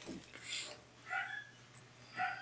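Two short, faint vocal sounds in the background, about half a second and a second in.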